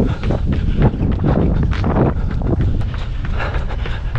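Wind rumbling across the microphone of a camera carried by a runner, with his footfalls as a steady stride rhythm of roughly three steps a second.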